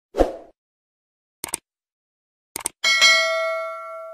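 Sound effects of an animated YouTube subscribe button: a short thump, a double mouse click about a second and a half in and another just before three seconds, then a bell ding with several tones that rings on and fades.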